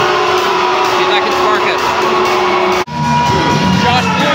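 Music over an ice arena's sound system with spectators' voices around it. There is a sudden brief dropout about three-quarters of the way through, where the recording is cut, and different music and voices follow.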